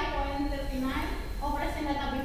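Speech only: a woman speaking into a handheld microphone, over a low steady hum.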